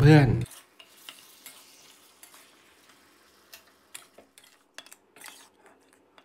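Faint sizzling of the sticky glaze around pork ribs in a hot pan, with scattered light clicks of a metal spatula against the pan, more frequent in the second half.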